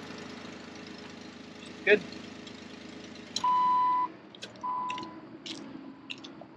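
Jeep Wrangler engine idling steadily just after being started, checked after towing behind the motorhome. Past the middle come two steady electronic beeps, a vehicle chime, followed by a few light clicks.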